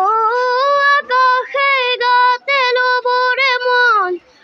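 A young boy singing solo and unaccompanied, in long held notes with a slight waver in pitch, broken by several short breaths between phrases.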